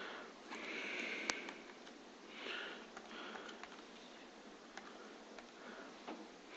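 Quiet typing on Chromebook keyboards: a few scattered key clicks, with soft breaths through the nose in between.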